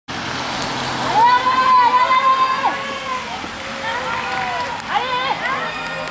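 High voices shouting long, drawn-out calls of encouragement to a passing runner, once about a second in and again around four to five seconds. Underneath is the steady noise of a slow car on a wet road.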